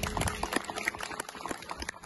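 Audience applauding after the music ends, a dense patter of hand claps that thins out and fades toward the end.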